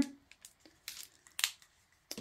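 Faint handling noises: two brief soft clicks or rustles, about a second in and again half a second later, as a plastic squeeze bottle of acrylic paint is handled over parchment paper.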